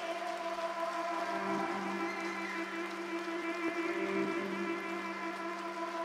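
Live band playing a sustained drone: several steady held notes layered into one chord, with no beat or rhythm.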